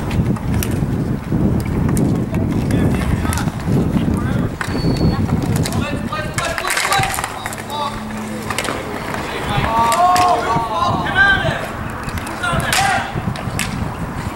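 Dek hockey play: short sharp clacks of sticks and the ball on the plastic court and boards, with spectators' voices chattering. A low rumble sits under the first half.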